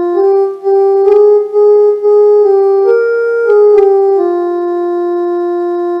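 Electronic keyboard playing a slow Raga Yaman phrase one sustained note at a time. The line climbs from Ga through tivra Ma and Pa to Dha about halfway through, then steps back down to Ga, which is held to the end.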